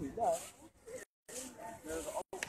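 People talking nearby, background conversation without clear words, with the sound cutting out completely for a moment about a second in.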